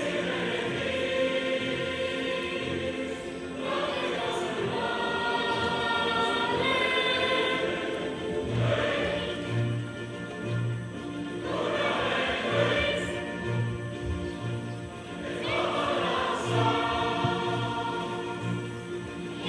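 A group of young girls singing a song together as a choir, in long held notes with short breaks between phrases.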